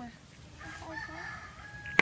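A long, drawn-out animal call in the background, starting about half a second in and held for about a second and a half, with a sharp click near the end.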